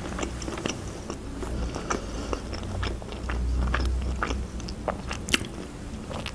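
Close-miked chewing of a mouthful of bread and salami, with many small irregular wet clicks and crunches of mouth and teeth.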